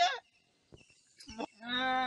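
A cow mooing: one long, steady call that starts about one and a half seconds in.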